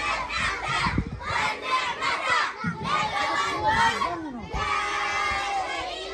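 A crowd of children shouting and calling out together, many high voices overlapping.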